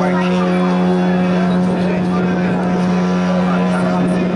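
Horn of the cruise ship MSC Seashore sounding a single steady, low blast, with people's voices faintly behind it.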